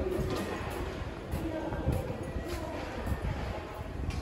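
Subway station concourse ambience: a steady low rumble with faint music and scattered light clicks in the background.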